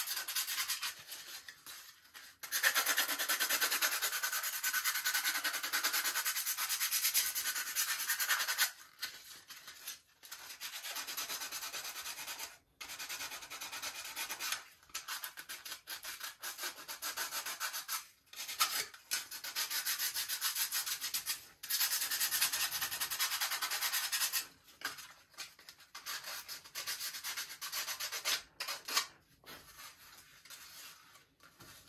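Sandpaper rubbed by hand over a model airplane's gear pod in quick back-and-forth strokes, in spells of several seconds broken by short pauses.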